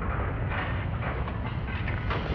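Deep, continuous earthquake rumble with rattling and clattering of shaken building contents, and a few sharper clatters through it.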